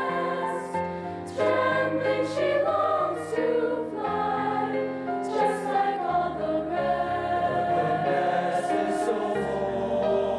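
Mixed choir of boys and girls singing in harmony, moving through held chords with crisp sibilant consonants.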